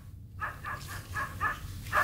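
A quick run of short, quiet, high-pitched animal calls, about four or five a second, over a low steady hum.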